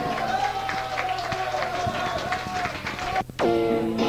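Live punk rock band on a 1983 cassette audience recording: a long held high tone over drum hits and crowd noise. About three seconds in the sound drops out for a moment, then electric guitar chords start.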